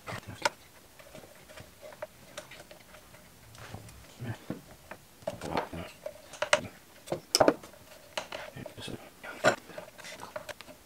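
Irregular hard-plastic clicks and knocks as the wraparound handle of a Stihl 180C chainsaw is pushed and worked onto the saw's housing, the sharpest knocks coming past the middle and again near the end.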